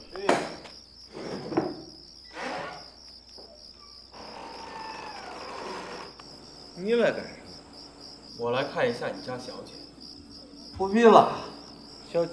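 Crickets chirping steadily. Three knocks on a wooden gate about a second apart near the start, then a long creak as the gate swings open.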